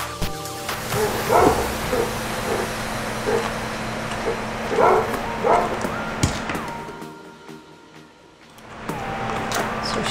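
Basset hound barking several times over background dance music. The music dips low for a moment near the end.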